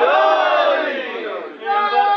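A crowd of men calling out loudly together in response to a recited verse, many voices overlapping, dying away about a second and a half in. Near the end a single steady held tone begins.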